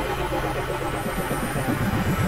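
A dense, noisy experimental mix of several music tracks playing over one another, continuous and busy, with a rapid fluttering pattern in the low end.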